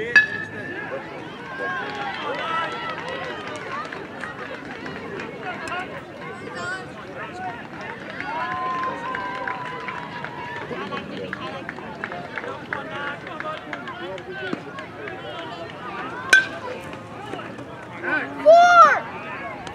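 Steady background talk of people around a youth baseball field, with one sharp crack of a bat hitting the ball a little before the end.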